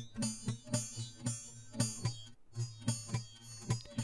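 Quiet playback of a recorded acoustic guitar part with its pitched notes edited out, leaving mostly the picking sound on the strings. It is a string of soft, irregular clicks, several a second, over faint low tones left from the notes.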